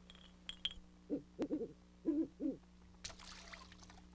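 A series of about five short hoots, each bending up and down in pitch, coming over about a second and a half. A few light clinks come just before them, and near the end water starts trickling and splashing.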